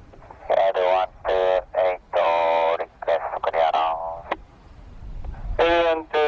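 Voice transmissions over an air-band radio receiver, in several short phrases with a pause of about a second near the end.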